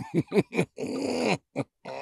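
Short bursts of a person's laughter, then a drawn-out wordless vocal exclamation whose pitch falls.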